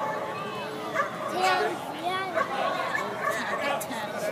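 A dog barking in short, repeated barks while it runs, with people's voices in the background.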